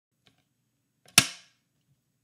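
A film clapperboard's sticks snapping shut once, a single sharp clack just over a second in that dies away quickly.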